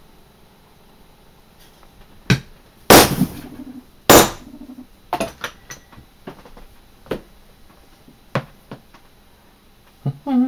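Hammer knocks on a wooden bench block: one knock about two seconds in, then two loud knocks with a short hollow ring about three and four seconds in, followed by lighter taps and clicks as tools and leather are handled on the bench.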